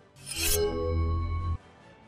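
News-bulletin transition sound effect: a swelling whoosh that settles into a held synthesized chord over a deep bass tone, lasting about a second and a half and cut off suddenly.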